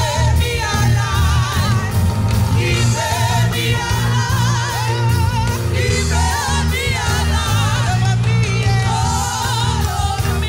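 A gospel choir singing live with a band in a reggae style, the voices over a heavy bass line and a steady drum beat.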